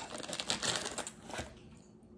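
Crinkly red foil inner bag of a Meiji Hello Panda box crackling as it is handled, dying away after about a second and a half.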